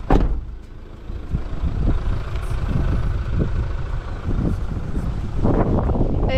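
Camper van driving slowly over a cracked, broken asphalt road: a steady low rumble of engine and tyres with irregular jolts from the rough surface, and a sharp thump right at the start.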